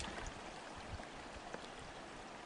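Faint, steady sound of shallow lake water lapping, with a few small ticks.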